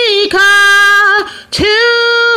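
A woman singing alone and unaccompanied, holding long notes that step down and back up in pitch, with a brief breath pause about a second and a half in.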